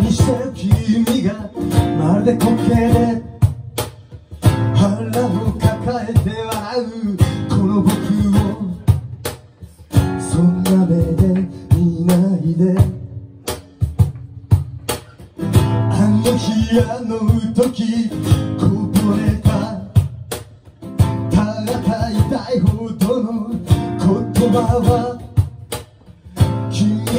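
Live acoustic guitar strummed in a steady rhythm, with a cajón keeping the beat and a man singing at times.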